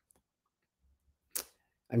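Near silence in a pause in a man's speech, broken by one brief burst of noise about a second and a half in, just before he starts talking again.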